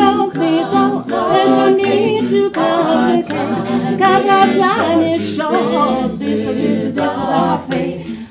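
An a cappella vocal group of men and women singing in harmony, with a low bass voice holding notes beneath the higher parts.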